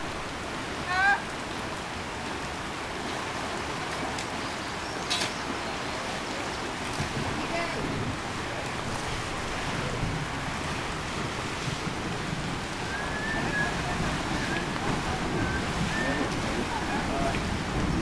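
Steady rushing wash of rain and moving floodwater, an even noise that holds at one level throughout.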